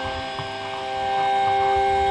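A steady hum made of several held tones, getting a little louder about a second in.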